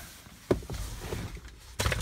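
Someone climbing into a car's driver's seat with the engine off: rustling and shuffling, a sharp knock about half a second in, and a louder, short burst of noise near the end.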